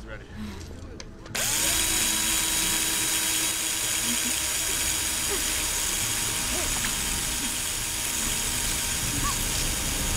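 A handheld surgical drill with a long thin bit starts up abruptly about a second in and runs steadily, a continuous whine, as it drills into a person's leg.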